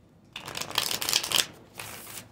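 A deck of tarot cards being shuffled by hand: a dense rush of card noise lasting about a second, then a shorter rush near the end.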